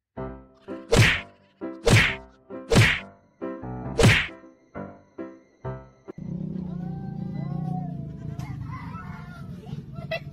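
Four loud slaps about a second apart, each with a short ringing tail, as hands slap the cat's raised paw in high fives. Then a steady low hum with faint gliding squeaks over it.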